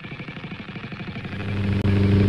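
Motorcycle engine running while the bike is ridden, its pulsing note growing louder and settling into a steadier, stronger drone over the second half.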